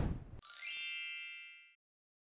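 A swelling whoosh cuts off and a bright chime dings about half a second in, its ringing tones fading away over about a second. These are editing sound effects marking a title-card transition.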